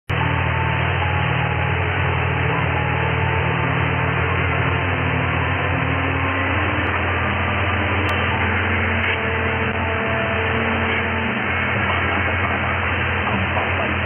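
Demodulated mediumwave AM radio reception on 828 kHz through a software-defined radio: steady static and hiss, muffled above about 3.5 kHz by the receiver's narrow filter, with a low steady hum underneath and no audible programme.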